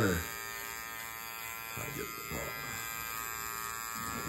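Electric hair clipper running with a steady buzz as it trims the hair at the back of the neck.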